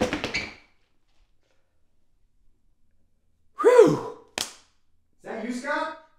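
A brief knocking noise, then silence. A man's startled yelp rises and falls in pitch, followed at once by a sharp slap as he claps his hands over his mouth, then a muffled voiced sound through his hands.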